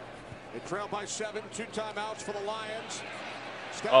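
Faint television play-by-play commentary from an NFL game broadcast, a man's voice talking under low background noise, followed by a louder man's exclamation right at the end.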